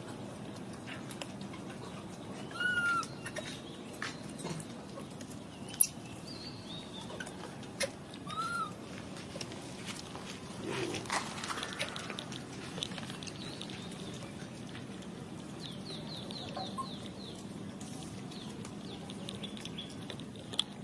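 Short, high animal chirps, each rising and falling, come now and then among light taps and clicks over a steady low background hum. A quick run of rapid chirps comes late on.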